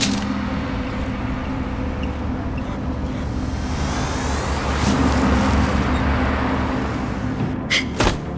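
Steady low hum of a car engine heard from inside the cabin, growing a little louder about five seconds in. Sharp hits come in right at the end.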